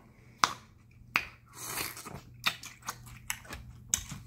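Close-miked biting and chewing of a raw mini sweet pepper: a handful of sharp, crisp crunches spaced through the few seconds.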